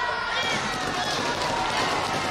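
Taekwondo sparring bout: quick footwork on the mat with voices calling out.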